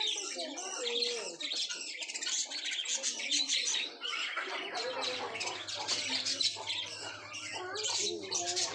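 A flock of budgerigars chattering and chirping without pause, a dense mix of many short high warbles and squawks overlapping.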